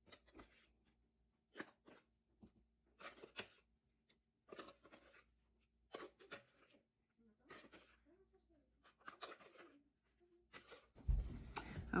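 Faint, irregular scraping and soft taps of a spatula working thick frozen fruit ice cream out of a plastic food processor bowl into plastic containers.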